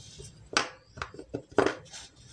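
A few light taps and clicks of two small black plastic PCB relays being moved and knocked together on a wooden tabletop by hand.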